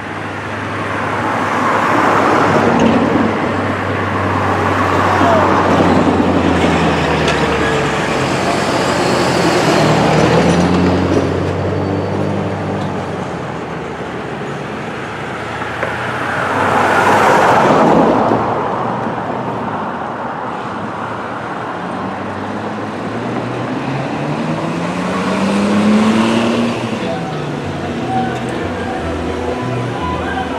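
Street traffic: cars passing one after another, about five pass-bys that each swell up and fade, the loudest about two-thirds of the way through, with engine notes rising and falling under a constant hum of road noise.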